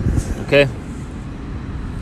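Steady low rumble of vehicle or road noise in the background, with a man's voice saying a single "okay?" about half a second in.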